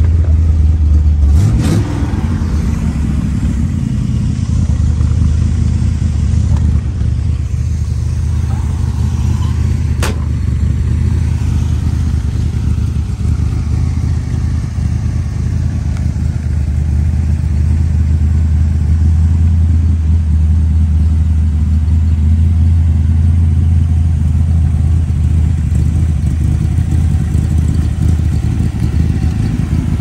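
1966 Corvette's 396 big-block V8 idling steadily. A knock comes about a second and a half in, and a sharp click about ten seconds in.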